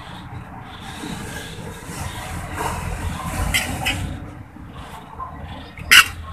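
Metal utensils scraping and rasping against a wok while fried noodles are pushed and lifted, ending in a sharp clink of metal.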